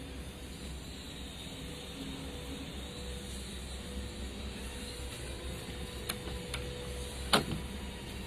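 A steady low hum in the background, then one sharp click about seven seconds in as the excavator's cab door latch is opened.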